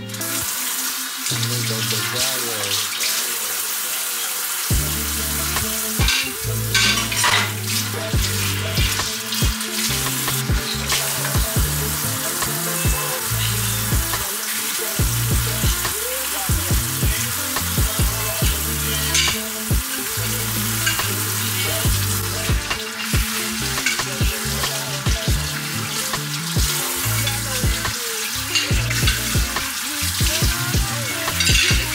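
Kitchen faucet running onto dishes in a sink, a steady splashing hiss, with scattered clinks of dishes being rinsed and handled.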